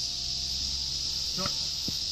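Steady high-pitched drone of insects, unbroken throughout.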